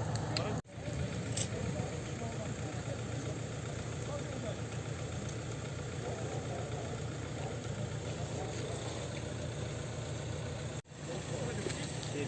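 A vehicle engine idling steadily under indistinct voices of people talking. The sound drops out briefly about half a second in and again near the end.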